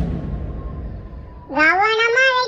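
Tail of a firecracker blast sound effect: a rumbling hiss fading away over about a second and a half. Near the end a high child's voice comes in with gliding pitch.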